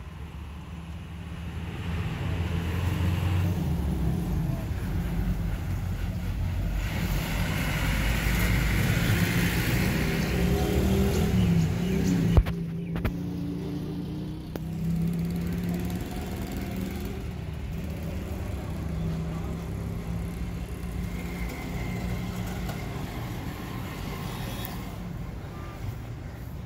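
A motor vehicle's engine running with a steady low rumble. A single sharp click comes about twelve seconds in.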